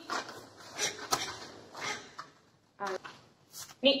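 Several sharp swishes and snaps, a second or so apart, from a karate gi and the performer's forceful breathing as kata techniques are executed, with one sharp snap about a second in. A short called word, part of a count, comes near the end.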